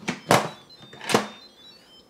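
Instant Pot electric pressure cooker lid being set on and turned shut: two short clacks about a second apart, the second with a faint brief ring after it.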